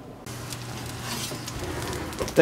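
Steady low hum with an even hiss from an open, hot oven, starting abruptly about a quarter second in.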